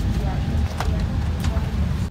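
Steady low rumble of an airliner cabin's air conditioning at the gate, with indistinct voices of boarding passengers and a couple of small clicks.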